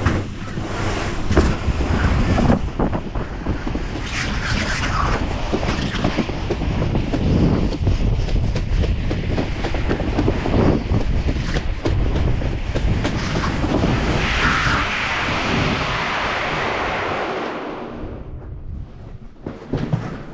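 Inflatable tube sliding fast down a summer tubing run's mesh mat track: a steady rushing rumble full of rattles and bumps, with wind buffeting the camera's microphone. It gets quieter near the end.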